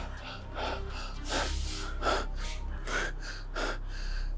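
A person gasping and breathing hard in short, rapid, shaky breaths, panicked breathing in shock after a violent struggle.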